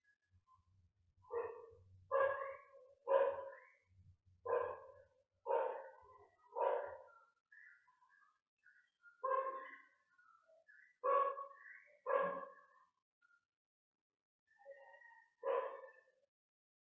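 A dog barking repeatedly, about ten single barks, most about a second apart, with a couple of longer pauses between runs.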